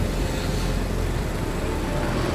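Steady road noise of riding in motorbike and scooter traffic: an even low rumble of engines and rushing air, with no distinct event standing out.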